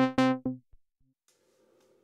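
Behringer 2600 synthesizer sounding the same low, buzzy note over and over, retriggered automatically by its repeat function at about four notes a second; the notes stop under a second in.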